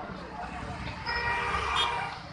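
Crowd of bystanders talking over one another, with a vehicle horn honking steadily for about a second in the second half.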